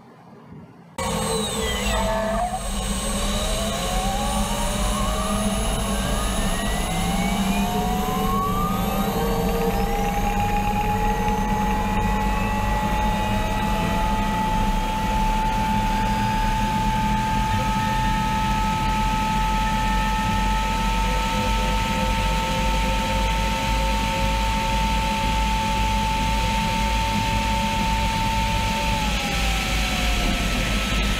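Gas turbine engine of a turbine-powered motorcycle at full throttle on a speed run: it cuts in suddenly, its whine rises in several glides as the bike accelerates, holds a steady high pitch, then starts to fall near the end as the throttle comes off.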